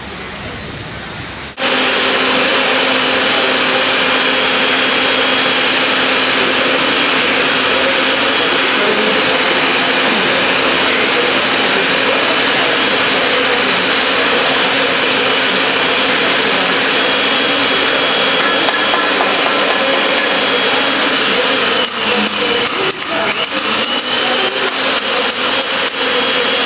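Electric pipe threading machine running loudly with a steady motor hum, starting abruptly about a second and a half in. Near the end, a run of sharp knocks and clicks sounds over it.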